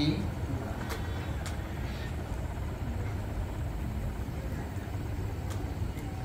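A steady low background rumble, with a few faint ticks.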